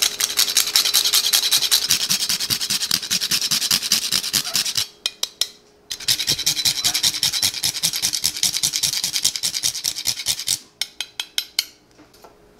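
A cinnamon stick grated on a fine metal rasp grater: rapid back-and-forth scraping strokes in two runs of about five seconds each, with a short break between, each ending in a few slower strokes.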